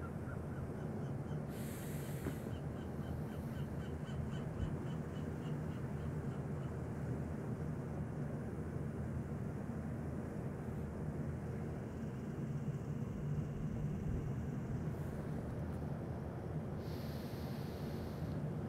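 Steady low outdoor background rumble, with two short hisses of breath: one about two seconds in and one near the end. A faint ticking, about four a second, runs for several seconds after the first breath.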